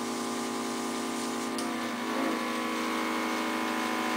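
Portable oxygen infusion system's compressor running steadily, driving the handheld spray nozzle: a steady motor hum with an airy hiss.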